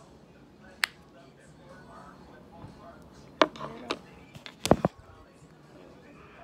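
Handling knocks on a wooden table: a single sharp click about a second in, then a cluster of clicks and knocks from about three and a half to five seconds in, the loudest near the end.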